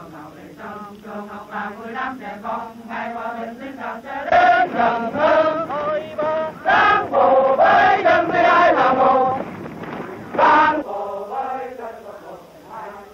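A group of soldiers chanting a marching song in unison as they jog in formation, in short rhythmic held notes. The chant grows much louder about four seconds in.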